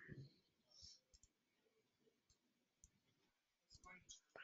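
Near silence with a few faint computer mouse clicks, scattered, with a quick cluster of them just before the end.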